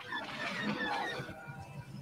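Space-battle sound effects led by the screaming engine howl of a TIE fighter passing close by, with short high cries in the first second.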